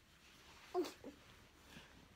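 A toddler's brief high-pitched vocal sound that falls steeply in pitch, about a second in, followed by a shorter, fainter one.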